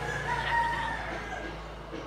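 A single long pitched call lasting about a second and a half, loudest about half a second in, over a steady low hum.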